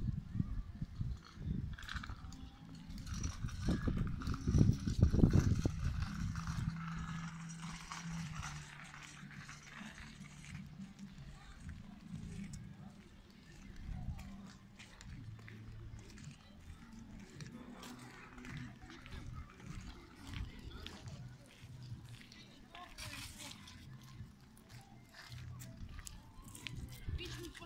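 Voices of people talking outdoors, not close enough to make out, with a loud low rumble about four to six seconds in.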